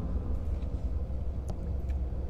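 A steady low rumble with a couple of faint clicks near the end.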